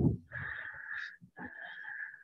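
A person breathing audibly through a relaxed forward fold: two long, soft breaths with a thin steady whistle in them.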